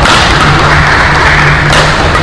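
Badminton racket strikes on a shuttlecock during a fast doubles rally: a sharp hit at the start and another near the end, over steady arena noise.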